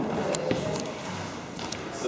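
Dance shoes stepping and scuffing on a hardwood floor as two dancers walk through steps: a few light taps and scrapes, several close together about a third of a second in and another pair near the end.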